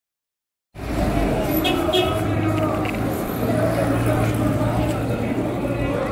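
Street ambience: voices of passers-by and a motor vehicle engine running, with a steady low hum through the middle. It cuts in suddenly after under a second of dead silence at the start.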